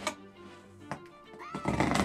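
A cardboard shipping box being cut open with a knife: a couple of sharp clicks, then a loud tearing rasp near the end, over background music.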